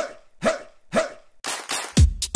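Dog barks in the dance mix's music track: three short barks about half a second apart, then weaker ones near the end.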